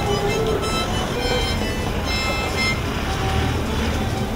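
Passing street traffic, a car and then a motorcycle, under background music with held notes. The low engine rumble grows stronger about three seconds in.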